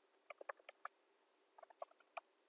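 Near silence with faint, irregular small clicks: a quick cluster of about six in the first second, then a few more near the end, over a faint steady hum.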